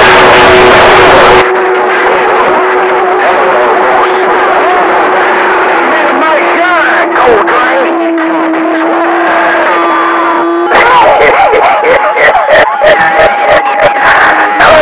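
CB radio receiver on channel 6 (27.025 MHz) with several stations transmitting over each other: garbled, unintelligible voices under a steady whistle, with loud static hiss at the start. The sound changes abruptly about a second and a half in and again near eleven seconds, as one transmission drops and another keys up with a higher whistle and choppy, breaking audio.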